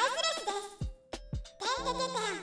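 A high-pitched Japanese voice speaking over background music, with a short pause about a second in.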